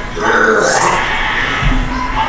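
A person's voice, with music underneath.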